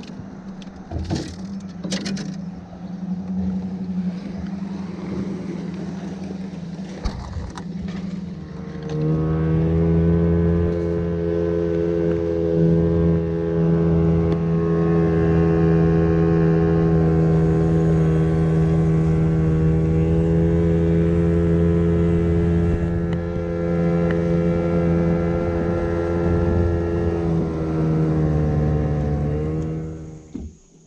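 A jon boat's outboard motor running under way: a steady hum at first, then throttled up about nine seconds in to a louder, even drone that holds until it eases off near the end.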